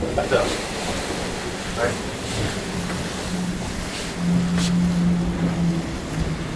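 Wind and rough sea rushing past a fast-sailing offshore trimaran, with a steady low hum that comes in partway through and grows louder about four seconds in.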